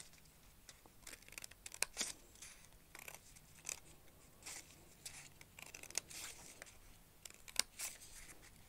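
Scissors snipping through folded paper: a run of short, quiet cuts, irregularly spaced, about one to two a second.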